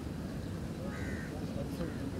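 Outdoor ambience with a steady low rumble of wind on the microphone, and a short bird call about a second in.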